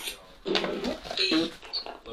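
Necrophonic spirit-box app sweeping, giving choppy, broken fragments of voice-like sound through a phone speaker, with a short high tone near the end.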